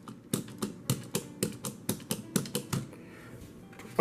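Plastic action-figure head-swing mechanism clicking as its button is worked over and over, about five sharp clicks a second, stopping just before three seconds in.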